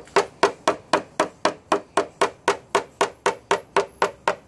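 Paintless dent repair knockdown tool struck with a hammer against a Subaru Crosstrek's sheet-metal decklid, tapping down a high ridge through the middle of a dent. The taps are quick and even, about four to five a second.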